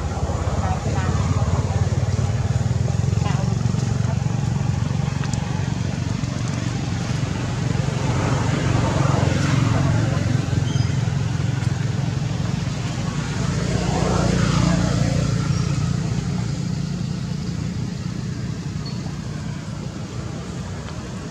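Motor vehicle engines running with a steady low rumble, with two louder rising-and-falling passes about nine and fourteen seconds in.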